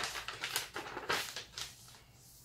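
A folded sheet of grid paper rustling and crinkling as it is handled and pressed flat onto fabric: several short rustles that die away near the end.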